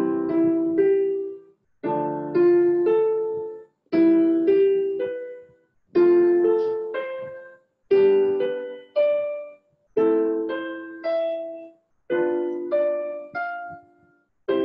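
Roland digital stage piano on its concert grand sound, playing left-hand block chords under right-hand arpeggios. A new chord is struck about every two seconds, seven times, each followed by a few rising broken-chord notes.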